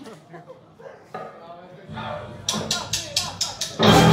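A live band starts its song: a low sustained note comes in about two seconds in, then sharp, evenly spaced hits about four a second, and the full band with drums and guitars crashes in loudly just before the end. Before the music there is faint crowd murmur.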